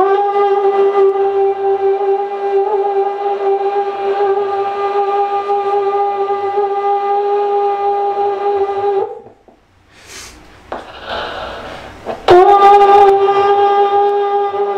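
Conch shell (shankha) blown in two long, steady blasts on one note. The first is held for about nine seconds and breaks off. The second starts after a pause of about three seconds, opening with a quick upward bend into the note.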